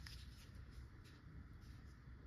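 Near silence: room tone with a faint low hum and one faint click at the very start.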